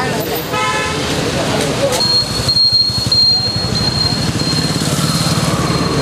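Street traffic: a short vehicle horn toot about half a second in, motor vehicles running past, and people talking nearby. A thin, steady high tone joins from about two seconds in.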